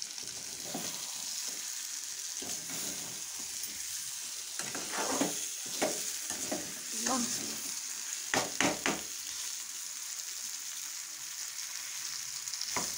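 Chicken fry masala sizzling in a metal kadai on a gas burner while a flat metal spatula stirs it, with a handful of short, sharp scrapes and knocks of the spatula against the pan between about five and nine seconds in.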